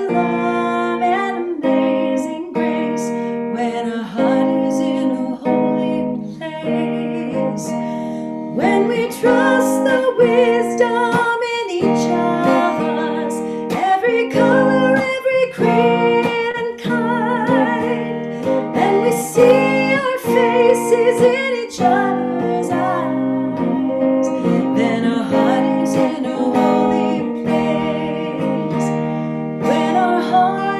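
A woman singing a hymn to a strummed and plucked guitar accompaniment, her held notes wavering with vibrato.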